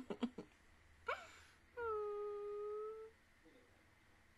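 A woman's laughter trails off. A short rising squeak follows, then one long, steady, high wordless whine of about a second, voiced as an emotional reaction with her face in her hands.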